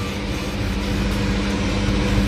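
A steady mechanical hum with a constant pitch over a low rumble, like a motor or fan running.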